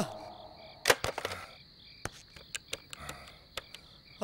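Landline telephone being handled and dialled: a sharp click about a second in as the receiver is lifted, a few quick clicks after it, then scattered lighter ticks of keys being pressed, over a faint steady high hum.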